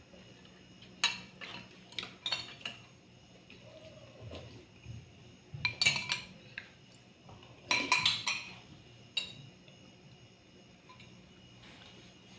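Metal spoons clinking against glass and ceramic serving bowls: a handful of sharp, ringing clinks in irregular clusters, the loudest about halfway through and again a couple of seconds later.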